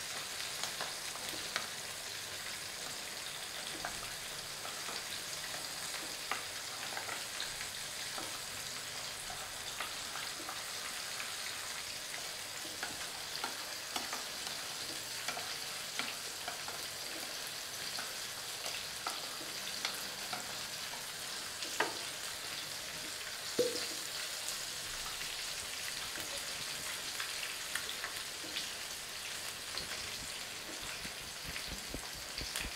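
A metal spoon stirring a liquid sauce in a ceramic bowl, with frequent small clinks and scrapes against the bowl over a steady hiss. Two louder clinks come a little past the middle.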